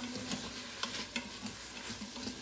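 Onions, green peppers and bacon sizzling in oil in an Instant Pot's stainless steel inner pot while being stirred. The utensil scrapes and clicks against the pot a few times.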